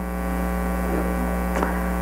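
Steady electrical mains hum: a low hum with a buzz of even overtones above it, unbroken through the pause.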